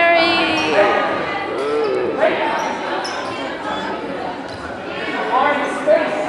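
Crowd voices and shouts echoing in a gymnasium during a basketball game, with a few sharp knocks of a basketball bouncing on the hardwood floor.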